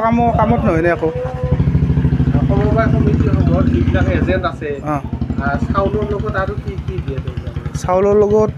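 An engine, like a motorcycle's, running with an evenly pulsing low rumble under a man's speech; the rumble drops off about four and a half seconds in.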